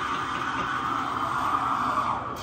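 A coffee machine running with a steady hiss.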